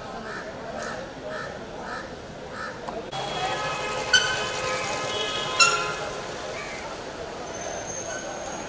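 A crow cawing repeatedly, about two caws a second, over street chatter, until the sound changes abruptly about three seconds in. After that come two short, sharp ringing tones about a second and a half apart, the loudest sounds here.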